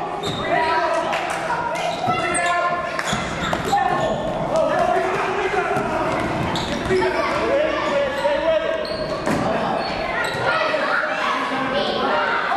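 Basketball bouncing and being dribbled on a hardwood gym floor during play, with a string of sharp knocks, under indistinct voices of players and spectators in the gym's echo.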